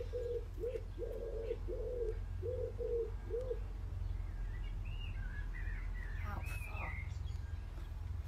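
A pigeon cooing, a run of low, evenly repeated hoots through the first few seconds, followed by a small songbird's brief chirping twitters. A steady low rumble runs underneath.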